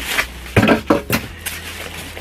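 Clear plastic wrapping rustling and crinkling in a few short bursts as it is handled.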